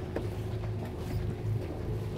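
Sailboat's inboard diesel engine running with a steady low hum as the single-lever throttle is pushed forward to motor ahead against the mooring line, with one light click just after the start.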